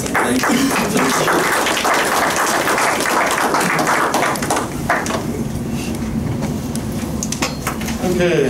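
A small audience applauding for about four seconds, a dense patter of claps that fades out around halfway through, leaving low room noise.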